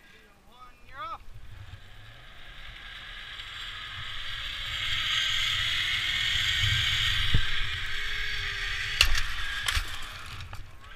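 Zipline trolley pulleys running along the steel cable: a whirring hiss that swells over the first half and holds. Two sharp metal clicks near the end.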